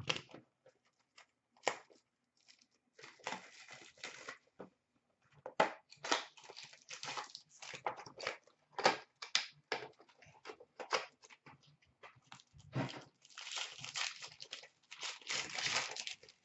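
Trading-card packs and their cardboard box being handled and opened by hand: foil wrappers crinkling and tearing, with light taps and knocks. Longer spells of crinkling come about three seconds in and again near the end.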